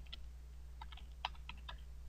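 Computer keyboard typing: a short run of light, quick keystrokes about a second in, as a word is typed.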